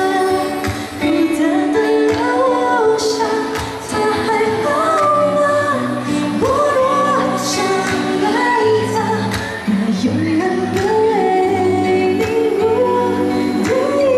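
A woman singing into a handheld microphone, her voice amplified, over musical accompaniment: a melody of long held notes that slide between pitches above a steady bass.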